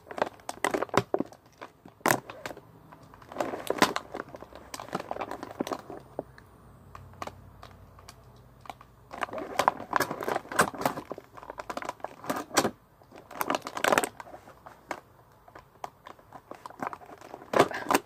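Plastic figure packaging crinkling and crackling in irregular bursts, with sharp clicks, as small accessory hands are worked out of a tight plastic tray.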